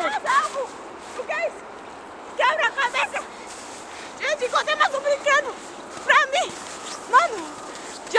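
Children's high-pitched voices calling out and chattering in short bursts, none of it clear words, over a steady background hiss.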